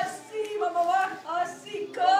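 A woman's voice calling out aloud in worship, without instruments.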